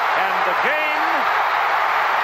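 A stadium crowd cheering loudly and steadily, heard through an old television broadcast's audio, with a play-by-play commentator's voice briefly over it in the first second.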